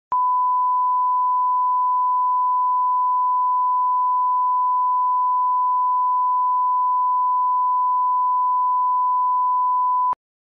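A steady 1 kHz line-up test tone, the reference sine tone that accompanies colour bars, held at one pitch and level without a break.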